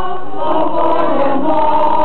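A choir singing a hymn in Catalan, holding sustained chords, with a change to a new chord about half a second in.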